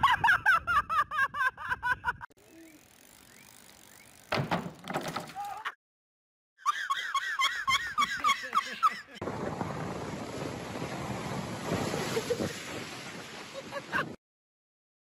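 Someone laughing hard in quick repeated bursts, twice, with a short pause between. About nine seconds in, a steady rush of surf breaking over rocks takes over.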